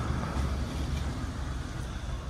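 Steady low rumble of outdoor background noise with a faint hiss above it, with no distinct events.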